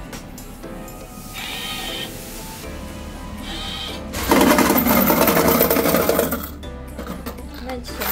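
Banknote changer taking in a 100 Hong Kong dollar note with short motor whirs, then a loud rapid clatter of coins pouring out into its tray for about two seconds.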